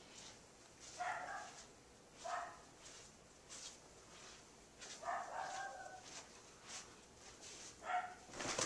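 A dog barking faintly: a few short barks spaced a second or more apart, one of them drawn out.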